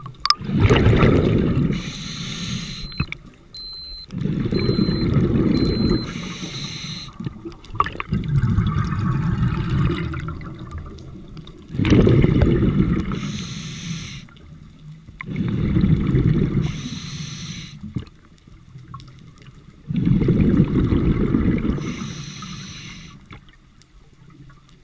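Scuba diver breathing through a regulator underwater: a short hiss on each inhale, then a rush of exhaled bubbles, about one breath every four seconds. About three seconds in, four short high beeps sound, under a second apart.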